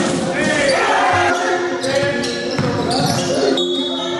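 Basketball game sounds in a sports hall: the ball bouncing on the court, with voices.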